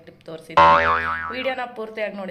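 A cartoon-style 'boing' sound effect comes in suddenly about half a second in, with a wobbling pitch, and fades over about a second. A woman's speech is heard around it.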